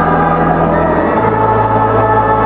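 A choir singing a hymn in long held chords over organ accompaniment; the bass note steps up a little past halfway.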